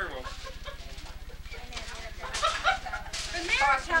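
Indistinct voices of several people chatting, with short bursts of laughter in the second half, over a steady low electrical buzz on the recording.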